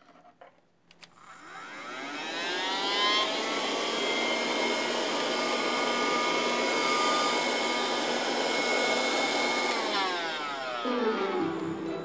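Handheld vacuum cleaner switched on, its motor whining up to speed, running steadily for several seconds, then switched off and spinning down near the end.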